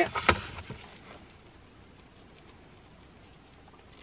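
A sharp click, then a faint, brief rustle as a piece of pita bread is torn in half by hand, followed by quiet car-cabin room tone.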